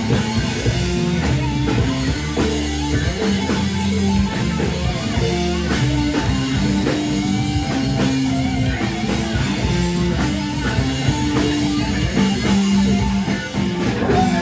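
Live rock band playing a riff on electric guitars over a drum kit, loud and continuous.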